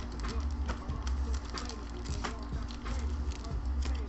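Foil-wrapped pack of trading cards being handled and opened by gloved hands: irregular crinkles and small clicks of the foil and cards.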